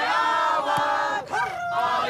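A group of young men chanting "hei" together in unison. There are two long held shouts, the second starting about one and a half seconds in.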